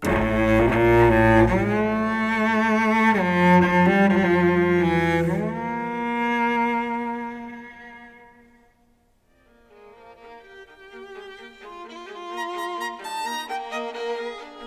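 Solo cello bowed in its low register, with notes sliding from one pitch to the next under a wide vibrato: glissando used for a sleazy, nasty effect. The notes die away about eight seconds in. Quieter, quicker string playing at a higher pitch then begins.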